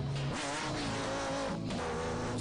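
Live worship song: a male lead singer and backing singers holding long, slightly bending notes over the band's accompaniment.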